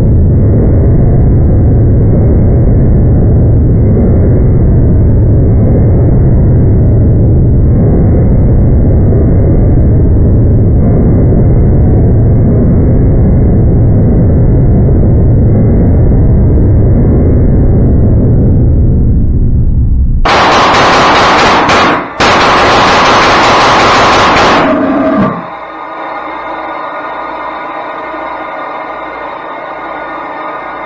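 Homemade pulse detonation engine, a steel tube engine, running flat out with a continuous, very loud low roar; about 20 seconds in it turns harsher and brighter, drops out for an instant, then cuts off abruptly about 25 seconds in. Whether it is truly detonating or only running as a pulsejet is the builder's open question. Quieter ambient synthesizer music follows to the end.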